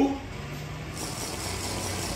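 A motor vehicle's engine running steadily, a low, even sound with a faint hum.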